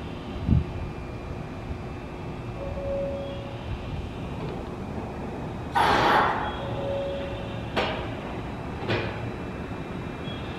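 JR West 227 series electric train standing at the platform: a low thump about half a second in, then a loud burst of compressed-air hiss about six seconds in, followed by two shorter, sharper hisses about a second apart. A short steady tone recurs about every four seconds.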